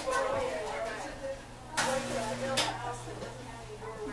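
A steady low hum with faint voices in the background, and two short, sharp scratchy clicks about two seconds in, under a second apart.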